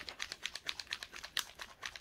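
A small bottle of white liquid resin dye being shaken hard: a fast, even clicking rattle, about eight to ten clicks a second.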